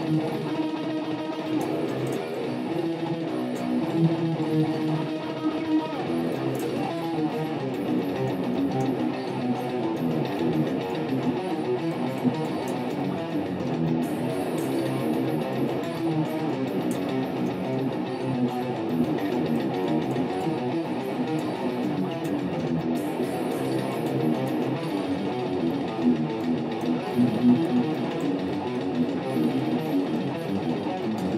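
Distorted electric guitar played through a Line 6 POD X3 amp modeller, riffing in technical death metal style over the band's recorded backing track. Held notes in the first few seconds give way to faster, choppier riffing.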